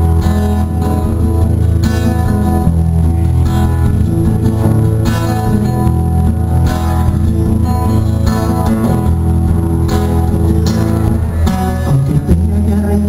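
Acoustic guitar strumming chords, the instrumental introduction to a song before the vocals come in.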